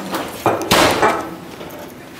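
A short knock, then a brief noisy clatter or rustle a moment later, like something being bumped or set down.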